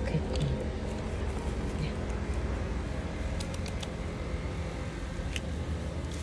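Low, steady outdoor background rumble with a few faint, short clicks scattered through it.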